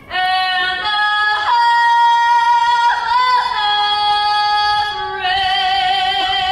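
A woman singing solo, holding long notes with vibrato and moving to a new note every second or two.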